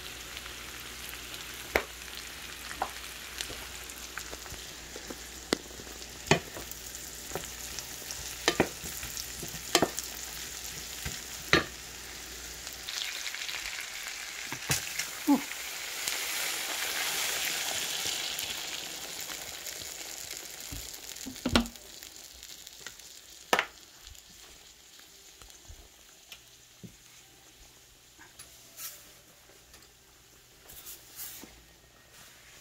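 Shrimp frying in butter in a nonstick pan, a wooden spoon knocking against the pan every second or two. About halfway through, Sprite poured into the hot pan sets off a louder sizzle and foaming bubble that swells, then fades toward the end.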